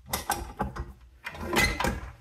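Metal clicks and clatter as a wire whisk is pushed and twisted onto the beater shaft of a KitchenAid Professional 600 stand mixer inside its stainless steel bowl, with a louder clatter near the end. The motor is not yet running.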